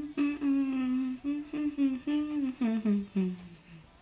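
A woman humming a tune with her mouth closed, in several short phrases, the pitch stepping lower over the last second.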